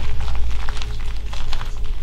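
Water trickling and dripping from a mine tunnel's ceiling, faint scattered drips over a low steady rumble.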